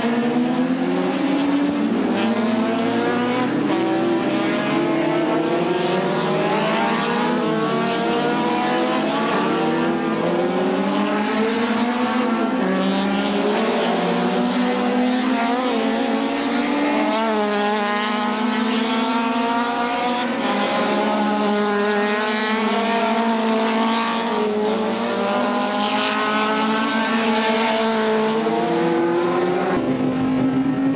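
Racing touring-car engines running hard at full throttle. The engine note climbs steadily and drops back again and again as the cars change gear.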